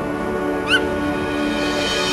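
High school marching band playing soft, sustained held chords that step slowly from note to note. About two-thirds of a second in, a brief high squeal rises and falls over the music.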